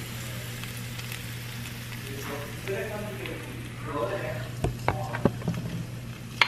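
Minced ginger and garlic with cumin and carom seeds sizzling in olive oil in a stainless steel sauté pan, a steady fine sizzle. In the last couple of seconds, sharp clicks and knocks of a spatula against the pan and bowl as onions are added.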